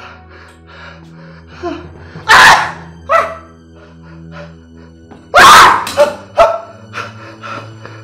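A man groaning and gasping in pain, with two loud cries about two and a half and five and a half seconds in, over sustained background music.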